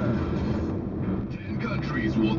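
Inside a moving car's cabin: a radio announcer's voice over a steady low hum of engine and road noise, with a brief lull near the middle.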